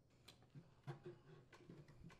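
Near silence, with a few faint light clicks.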